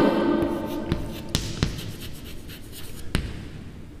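Chalk writing on a chalkboard: faint scratchy strokes with a few sharp taps as the chalk meets the board.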